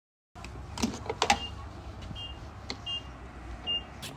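Four short, faint, high electronic beeps, each a quick double tone, come about a second apart over a steady low background. A few soft knocks fall early on, in step with walking on wet pavement.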